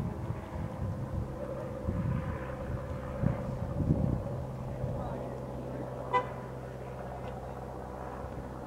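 Outdoor ambience with a low rumble in the first half, then a steady low hum, and one short, high beep about six seconds in.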